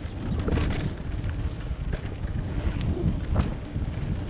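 Wind buffeting the microphone of a mountain bike's on-board camera during a fast descent, over the low rumble of knobby tyres on a dirt singletrack. A few short clicks and rattles from the bike over bumps.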